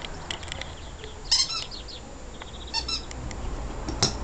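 A Cavalier King Charles Spaniel puppy gives two short, high-pitched whines about a second and a half apart. A few light clicks are also heard.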